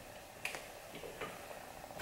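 A few faint, short clicks and light rustles from a person shifting and leaning forward, against a quiet room background.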